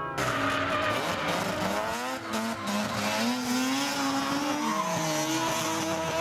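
Rotary-engined drift car on a race track, its engine revving up and down and its tyres squealing as it slides.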